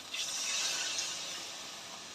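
Water poured into hot fried masala paste in a steel kadhai, hissing and sizzling. The sound starts sharply just after the pour begins and fades steadily as the liquid settles.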